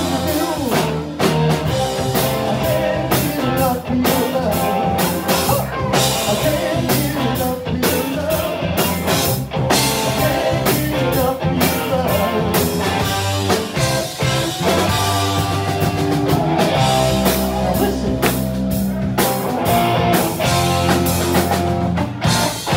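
Live rock band playing: distorted electric guitars through Marshall amps, bass guitar and a drum kit driving a steady beat, with a lead singer.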